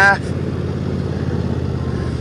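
Cub Cadet XT1 LT46 riding mower's engine running steadily at a moderate throttle, with its 46-inch mower deck blades engaged.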